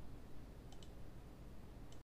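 Computer mouse clicking faintly: a quick double click a little before the middle, then a single click near the end, over low room hum.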